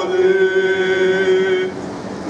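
Greek Orthodox Byzantine chant sung by men, holding one long steady note that breaks off near the end.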